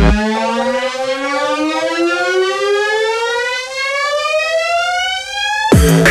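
Neurofunk synthesizer riser: the drums and bass drop out and one pitched synth tone with its overtones slides steadily upward for nearly six seconds, building tension. Just before the end, the full drum-and-bass beat and bass drop crash back in.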